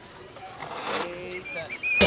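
Faint voices of people talking in the background, with a few short, high, wavering chirps late on.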